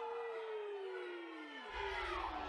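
A single voice holding one long, high, wordless shout in a hall, slowly falling in pitch and breaking off near the end.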